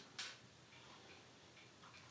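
Near silence: faint room tone, with one short, faint click just after the start.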